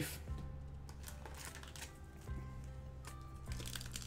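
Soft background music with low, held notes that change every second or so. Near the end, a foil Pokémon booster pack crinkles faintly as it is handled.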